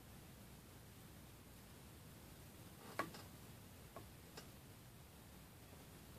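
Near silence: room tone, broken by three faint, brief clicks about three, four and four and a half seconds in, the first the loudest.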